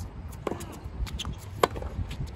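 Tennis rally on a hard court: sharp pops of the ball coming off racquets and court. The pops come about a second apart, the loudest about a second and a half in.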